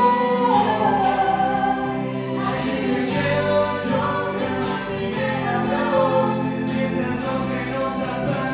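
Woman and man singing a Spanish-language ballad as a live duet into microphones, backed by a band.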